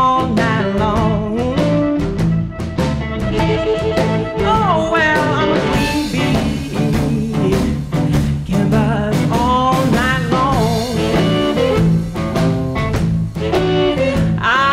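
A blues band playing live: electric guitar, bass and drums, with a lead line that bends and slides in pitch over a steady, repeating bass pattern.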